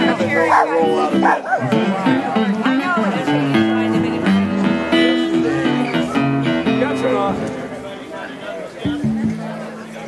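Guitar music with held, stepping notes, growing quieter in the last few seconds, over people talking.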